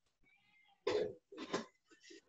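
A person coughing twice, two short coughs about half a second apart, starting about a second in.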